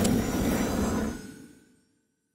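Whooshing sound effect for an animated logo: a rushing noise with a low rumble that fades away about a second and a half in.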